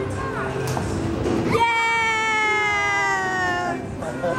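A young child's voice holding one long note for about two seconds, sliding slowly down in pitch, after a few short vocal sounds in the first second and a half.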